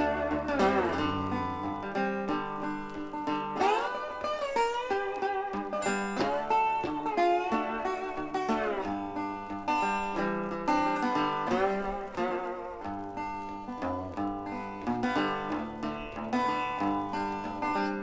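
Instrumental guitar break in a blues song: a plucked guitar solo whose notes repeatedly bend upward in pitch, over a steady accompaniment.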